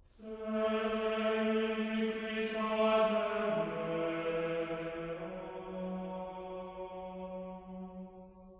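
Choir voices singing long held chords. They come in suddenly at the start, shift to a lower chord about three and a half seconds in, and slowly fade.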